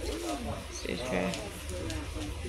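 Wordless voice sounds: a short rising-and-falling coo-like call near the start and another vocal phrase about a second in, over a steady low hum.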